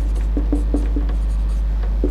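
Marker pen squeaking and scratching on a whiteboard as a word is written: several short squeaks. A steady low hum runs underneath.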